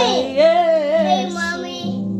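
A woman singing a gospel phrase, her voice sliding up and down in pitch, over a steady sustained backing chord that shifts lower near the end.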